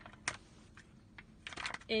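Plastic packaging bag crinkling in the hands in short, separate crackles, a few of them close together near the end, as gel is pulled out of it.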